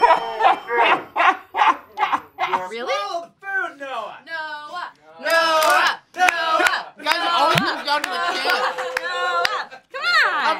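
A woman laughing hard, in quick repeated ha-ha pulses for the first few seconds, then high, wavering voice sounds and animated exclaiming that carry no clear words.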